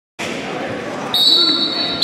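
A referee's whistle blows one long steady blast starting about a second in, signalling the start of a wrestling bout, over the murmur of voices in a large indoor hall.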